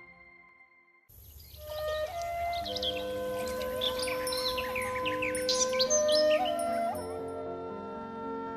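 About a second of near silence, then calm background music of long held tones with birds chirping over it. The chirping dies away before the music ends.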